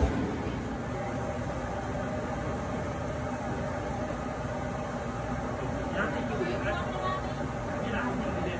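AlterG anti-gravity treadmill running, a steady, super loud drone from the air blower that keeps its pressurized lower-body chamber inflated, together with the belt motor.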